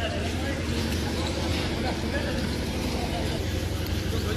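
Wind buffeting a phone microphone: a steady low rumble with faint voices in the background.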